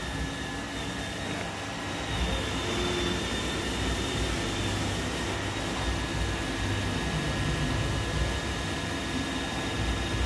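iRobot Roomba E5 robot vacuum running as it drives across a tile floor: a steady whirring of its motors and brushes with a thin high whine over it.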